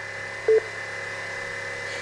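Mercedes W211 AIRMATIC air-suspension compressor running steadily with a tonal hum during a pressure test, with a brief short tone about half a second in. It is building pressure sluggishly toward the 14 bar it should reach: a sign of a weak compressor that needs replacing.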